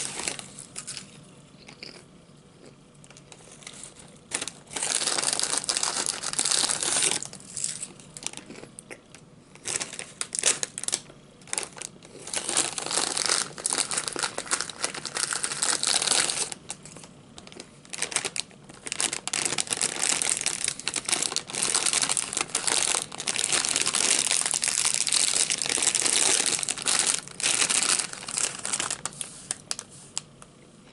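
Foil potato-chip bag crinkling as it is squeezed and handled, in long stretches of several seconds with short pauses between.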